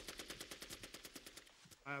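Automatic gunfire: a rapid, continuous burst of about a dozen shots a second that grows fainter and dies away after about a second and a half.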